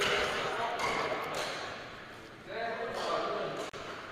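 Indistinct speech in a large hall, quieter than the surrounding coaching talk, with footsteps on a wooden court floor and a single sharp click near the end.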